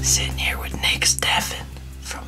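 Hushed whispering in short breathy bursts, over a soft background music bed of steady low sustained notes.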